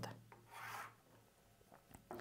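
Tailor's chalk drawn along a ruler across cotton blouse fabric: one faint, short scratchy rub about half a second in.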